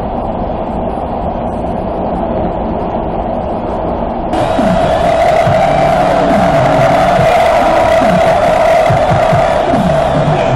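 Subway car running noise with a steady high-pitched band of sound. About four seconds in, it jumps to a louder mix of music and passengers' voices.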